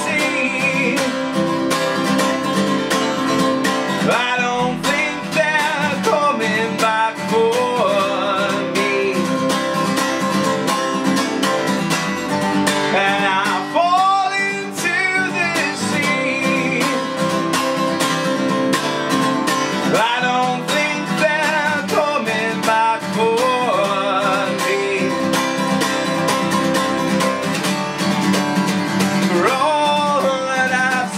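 Acoustic guitar strummed steadily in quick, even strokes, with a man's voice singing over it at times.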